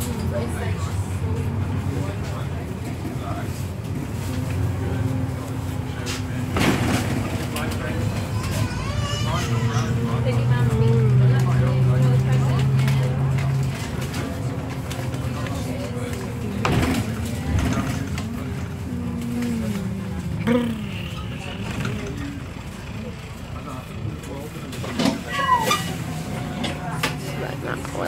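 Interior sound of a single-deck service bus under way, heard by the front doors: the engine and driveline whine rise and fall in pitch as it speeds up, with a louder stretch of acceleration about ten seconds in, and slow down again. Sharp rattles and clatters from the bodywork and doors come through, several of them near the end as it pulls in to a stop.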